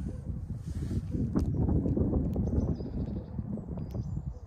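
Wind buffeting the microphone: a steady, uneven low rumble, with one sharp click a little over a second in.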